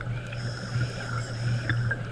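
Boat motor running with a steady low hum. A faint high whine runs through most of it, with a few light clicks.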